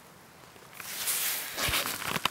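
Rustling and handling noise close to the microphone: fabric and the head net brushing as the camera is moved. It begins about a second in, grows louder, and ends with a dull thump.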